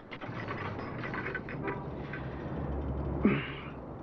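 Clicks and rattles of gym weight-machine equipment being worked, with a low rumble building and a brief hiss near the end.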